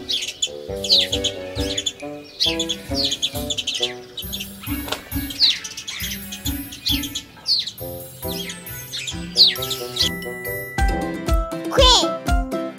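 Bird chirps, short falling tweets about once a second, over children's music with a steady beat. About ten seconds in the chirps stop and the music changes, with a sliding note near the end.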